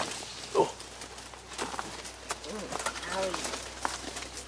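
Leaves and twigs rustling and snapping, with scattered footsteps, as someone pushes through dense overgrown vines and brush.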